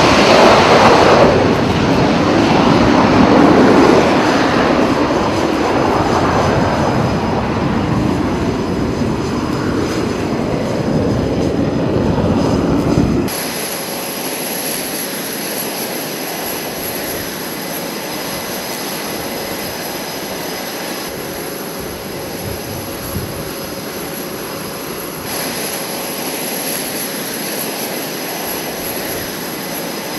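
F/A-18 jet engines at full power for a carrier catapult launch: a loud jet roar that slowly fades as the aircraft goes. About 13 seconds in it cuts abruptly to a quieter, steady jet noise with a thin high whine.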